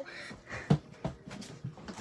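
A few scattered knocks and thumps, the loudest a little before halfway, of a child clambering over furniture on a homemade obstacle course.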